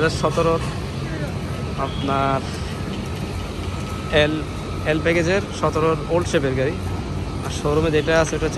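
Intermittent voices talking, in short phrases, over a steady low background rumble.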